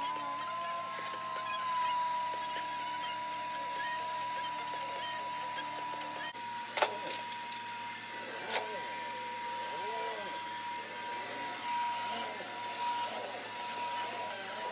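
Upright vacuum cleaner motor coming up to speed at the start, then running steadily with a high whine. Two sharp knocks come about seven and eight and a half seconds in, the first the loudest.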